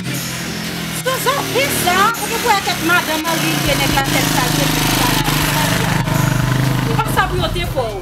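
A song: a voice singing over instrumental music with a steady bass line.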